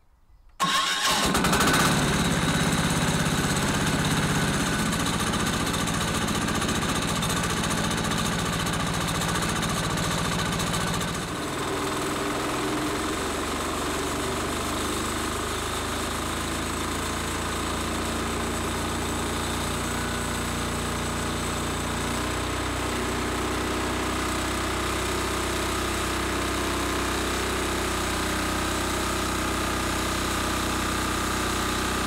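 Small engine of a homemade bandsaw mill starting up about half a second in, then running steadily while it warms up. About eleven seconds in, its note dips and settles a little lower, and it runs evenly from then on.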